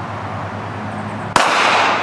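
A single 9mm pistol shot from a Glock 19X about 1.4 seconds in: a sharp crack followed by a long, echoing tail that fades slowly.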